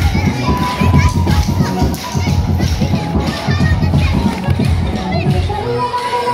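Music with a steady bass beat plays for a circle dance, under the busy chatter and calls of a large crowd of adults and children in a hall.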